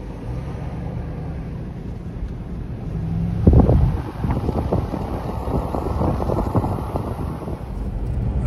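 A car driving, its engine and road noise a steady low hum. About three and a half seconds in, a loud gust of wind buffets the microphone, and the rushing noise carries on until near the end.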